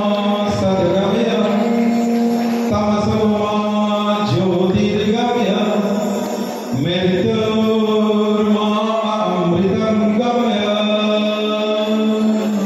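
A voice chanting a slow devotional melody over a steady low drone.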